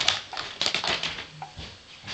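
Paper rustling and light knocks of magazines and books being pulled off a low shelf by a baby's hands: a quick, irregular run of clicks and crackles that thins out toward the end.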